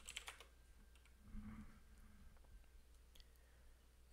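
A few faint computer keyboard keystrokes in the first half second, then near silence: room tone.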